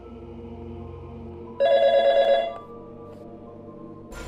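A single short electronic telephone ring, trilling and loud, starts about a second and a half in and stops after just under a second. It sounds over a low, steady music drone.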